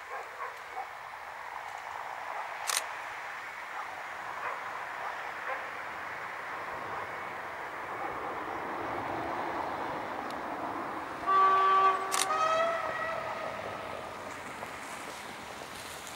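SU42 diesel locomotive approaching from a distance, its running noise slowly building, then sounding its horn about eleven seconds in: two blasts in quick succession on different pitches, the loudest sound here.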